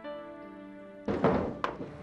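Walnuts being cracked with a nutcracker: a loud crunching crack about a second in, then a sharp snap just after, over soft background music.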